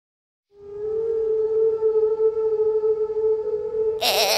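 One long held musical note, steady in pitch, coming in about half a second in after silence and sustained, opening the song's instrumental introduction.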